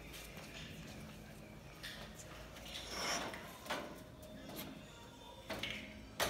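Faint, scattered knocks and rubbing of a steel cart frame being handled and set on its legs, with soft rolling of its caster wheels on concrete.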